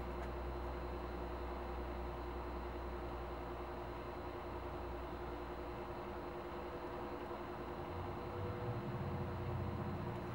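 Steady low hum of workshop room noise with a faint held tone, and a soft low rumble near the end.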